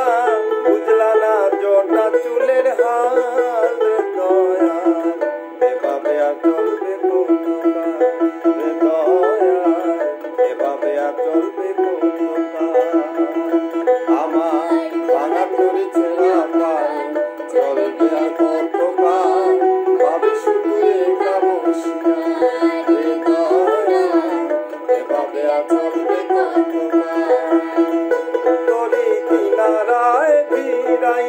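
A dotara plucked in a running melody, accompanying a man and a woman singing a duet.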